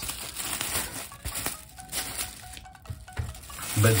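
Thin clear plastic bag crinkling and rustling in the hands as photo cards are slid out of it, with scattered small ticks.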